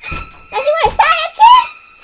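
A high-pitched voice sliding up and down in pitch, over sustained background music tones.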